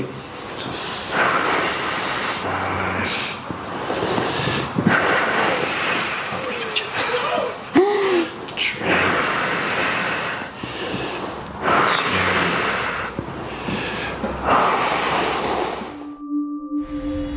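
A woman breathing hard through painful deep tissue massage on her back: long, loud breaths in and out every couple of seconds, with a short pained whimper about eight seconds in.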